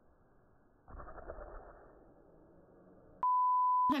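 A single steady high-pitched beep lasting under a second near the end, a pure tone of the kind edited in to bleep out a word. Before it there is only faint, muffled sound.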